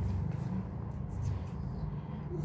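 Faint rustling of a large paper envelope being handled, over a steady low hum.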